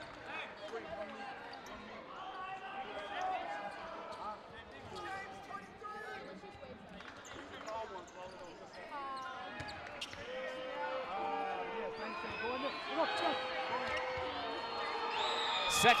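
A basketball bouncing on a hardwood court as the free-throw shooter dribbles at the line, under a gym full of crowd voices and shouts that grow louder toward the end as the shot goes up.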